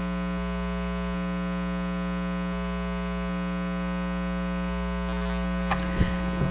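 Steady electrical mains hum in the audio feed, a constant buzz with many evenly spaced overtones that does not change.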